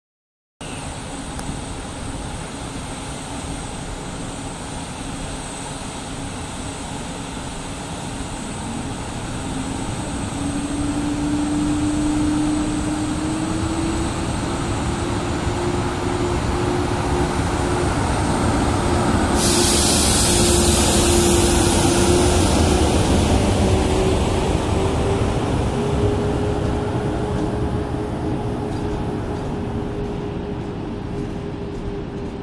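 PKP EP09 electric locomotive pulling a passenger train away from a station, its hum slowly rising in pitch as it gathers speed while the rumble of wheels grows louder as it passes. About two-thirds in, a loud hiss sets in suddenly, then fades as the coaches roll by.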